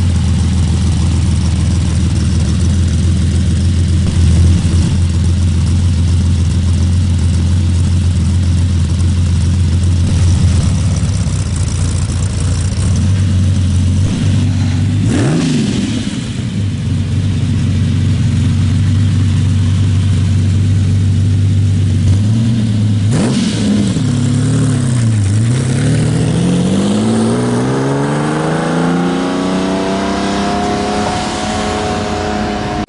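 Lamborghini Countach 5000 S V12 idling with a steady low note, then two short blips of the throttle about halfway and two-thirds in, followed by a long pull with the pitch rising steadily as the car accelerates away near the end.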